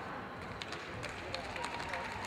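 Footsteps and shoe squeaks of badminton players moving on the court, with a few light taps and voices in the hall.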